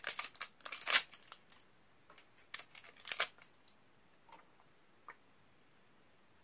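Plastic bag and packaging rustling and crinkling in short bursts as items are handled. The bursts are busiest in the first second and a half, loudest about a second in, come again around three seconds in, then thin out to a few small clicks.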